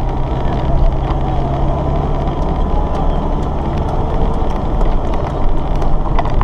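Engine and road noise heard from inside a moving vehicle's cab: a steady low drone with a faint hum and a few light clicks.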